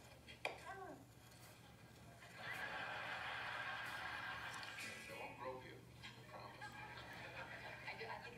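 Faint background voices. About half a second in there is a short cry whose pitch bends up and down, and a steady noisy hiss runs for a couple of seconds in the middle.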